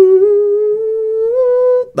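A single male a cappella voice, held alone after the full chord drops out, sustaining one high falsetto note that rises slowly and steps up near the end before stopping. The listener takes it for the group's bass singer in falsetto.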